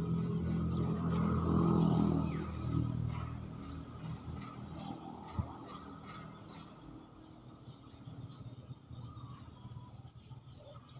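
A motor vehicle's engine passing, loudest about two seconds in and then fading away. There is a single sharp click about five seconds in, then faint bird chirps.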